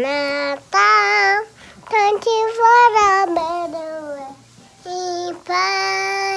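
A small girl singing in several short, high-pitched phrases with brief pauses, her voice close to the microphone.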